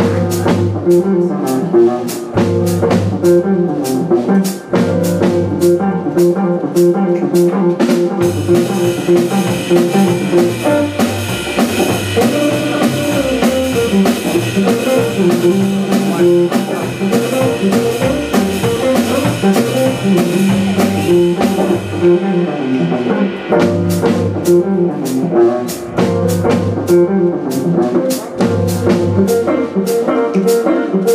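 Live instrumental blues trio: electric guitar, upright double bass and drum kit playing a steady beat. The drumming fills out into a denser stretch through the middle, and sharp, evenly spaced drum strokes return near the end.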